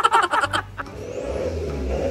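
Diesel BMW engine idling through a straight-piped exhaust with the centre resonator removed, a steady low rumble that settles in about half a second in.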